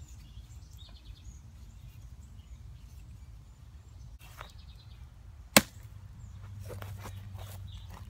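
Steady low rumble of road-paving machinery at a distance, with one sharp click about five and a half seconds in that is the loudest sound, and a few fainter clicks around it.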